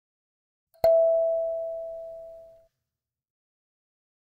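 A single kalimba tine plucked once about a second in, giving a clear metallic note that fades steadily for nearly two seconds and then stops abruptly.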